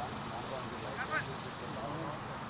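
Distant voices of cricket players calling out across an open field, short and scattered with the clearest burst about a second in, over a steady background of outdoor noise.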